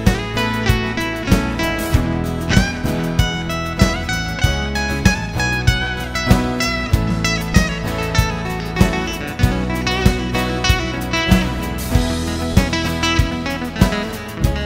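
Martin SC-13E acoustic guitar playing high lead lines over layered rhythm-guitar tracks recorded on the same guitar, in a full mix with a steady beat.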